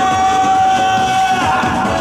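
Live upbeat pop song played over a stage sound system, with one long held note that ends about a second and a half in.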